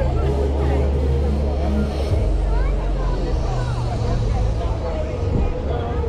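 A car's engine running close by, a low steady drone that eases off after about four seconds, over the chatter of a crowd of people.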